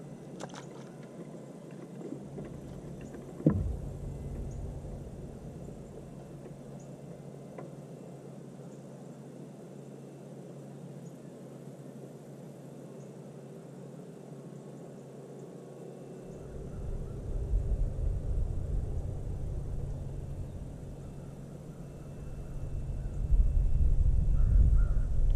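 Quiet outdoor ambience with one sharp knock about three and a half seconds in, then a low rumble that sets in about two-thirds of the way through and grows louder near the end.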